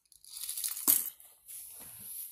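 A deck of tarot cards being handled and shuffled, a papery rustle with a sharp snap of cards about a second in.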